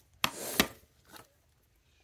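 Hard plastic graded-card slabs knocking on a desk as they are handled: a sharp clack, a short scrape, and a second clack, all within the first second, then a faint tap.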